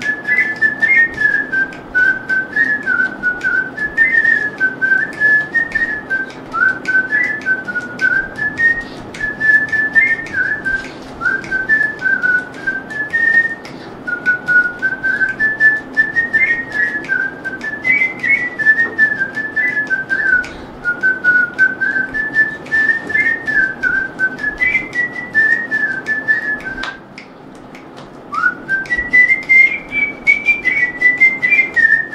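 A man whistling a song melody in a clear, pure tone that moves up and down in short phrases. Near the end the tune stops briefly, and a new one begins with an upward slide.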